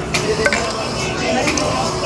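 Restaurant background chatter and music, with a few light clicks of cutlery against the food tray.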